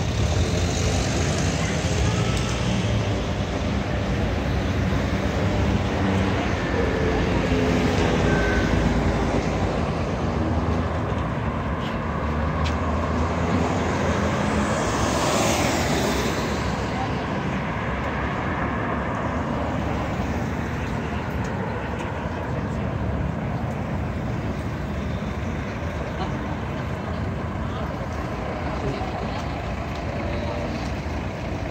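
City street traffic: car engines idling at a red light, then cars moving off. One car passes close about halfway through, its engine and tyre noise swelling and fading.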